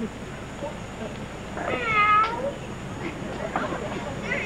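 A single drawn-out meow-like call, about two seconds in, its pitch dipping and then rising again.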